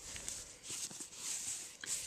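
Playing cards being slid and swirled around face down on a mat to mix them: a soft, uneven swishing scrape with a few light ticks.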